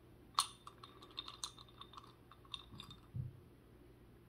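Small decorative pumpkins clicking and clinking against each other and the glass jar as they are picked out by hand: one sharper clink about half a second in, then a string of light, faint taps.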